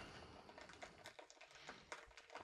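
Faint typing on a laptop keyboard: light, irregular key clicks.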